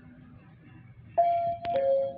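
Mitsubishi AXEL-AI elevator's electronic arrival chime: two descending tones starting about a second in, the lower one held, with a sharp click just before it.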